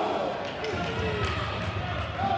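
Voices calling out across an ice hockey arena during play, with a run of dull thuds about a second in.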